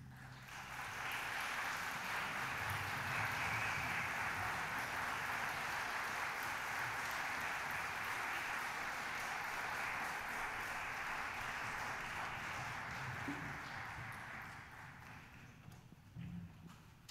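Audience applauding after the orchestra's final chord. The applause swells about a second in, holds steady, then dies away near the end.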